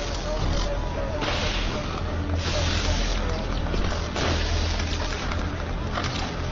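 Fire hoses spraying water: a rushing hiss that comes in three long surges, over a steady low drone.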